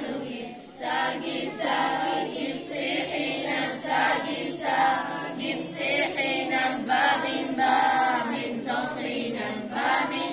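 A group of children singing together in chorus, in phrases with a short break just under a second in.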